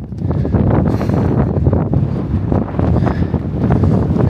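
Strong wind buffeting the camera's microphone: a loud, uneven low rumble that rises and falls with the gusts.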